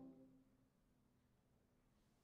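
A French horn choir's held chord cutting off, its hall reverberation dying away within about half a second, then near silence.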